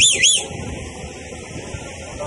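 A bird call: a quick run of four clear whistled notes, each rising and falling, ending about half a second in. Faint outdoor background noise follows.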